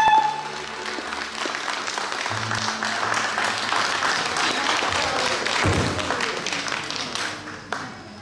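The last held note of a sung song with backing track ends just after the start, and an audience applauds, the clapping thinning out near the end. A short knock sounds just before the end.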